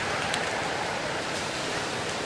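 Steady outdoor background hiss with no clear pitch, with a single short click about a third of a second in.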